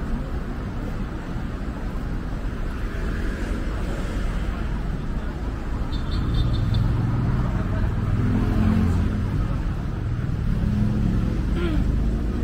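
City street traffic noise: a steady wash of cars running past, with a deeper engine rumble building in the second half.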